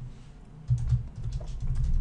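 Computer keyboard typing: a quick run of keystrokes starting less than a second in, as a short sentence is typed out.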